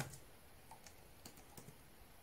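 Faint key clicks on a Lenovo Yoga laptop's built-in keyboard: a handful of quick keystrokes in the second half, typing out a word.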